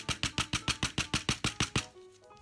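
Small metal part of a SOTO turbo lighter tapped rapidly against a cardboard-covered desk, about seven sharp taps a second, stopping shortly before the end. The tapping works to shake out the debris clogging the burner.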